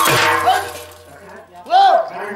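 Music stops abruptly, then a person's voice gives a short, faint call about half a second in and a loud, brief shout near the end.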